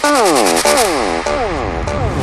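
Psytrance music in a short break without the kick drum: a synth plays repeated falling pitch sweeps, about three a second.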